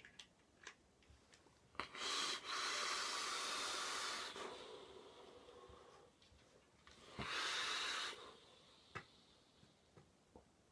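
A long hissing drag of about two seconds through a Mutation X rebuildable dripping atomizer coiled at 0.18 ohms, fired by a MOSFET box mod, trailing off into a softer breath out of vapour. A second, shorter hissing drag comes about seven seconds in, with a few light clicks before the first.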